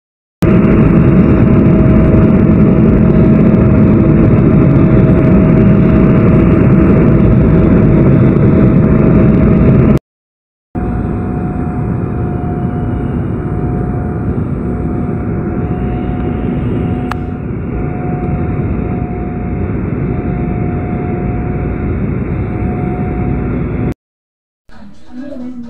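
Jet airliner cabin noise in flight: the turbofan engines and rushing air make a loud, steady noise with a steady hum in it. About ten seconds in it cuts off abruptly and comes back somewhat quieter, with a steady mid-pitched tone running through it.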